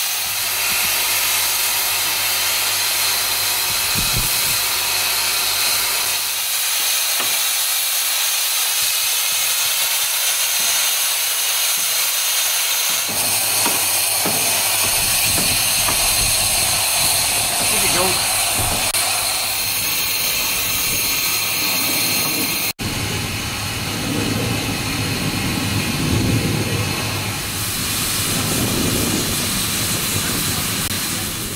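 Steady hiss of steam from the 1897 Soame steam cart's boiler as it is raised in steam.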